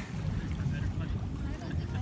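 Wind buffeting the phone's microphone: a steady low rumble.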